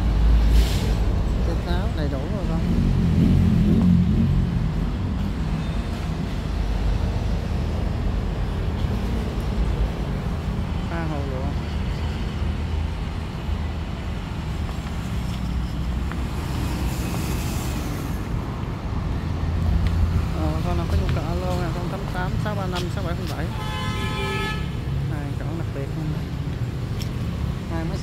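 Steady low rumble of vehicle traffic, with a horn tooting once for about a second and a half near the end and faint voices in the background.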